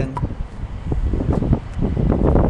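Low, gusty rumble of air or handling buffeting the webcam microphone, swelling about a second in and again near the end.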